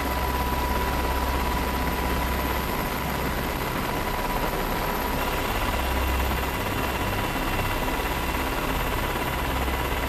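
Steady drone of an aircraft's engines and rushing air, heard from aboard the aircraft, with a low rumble that swells and fades a few times and a faint steady whine.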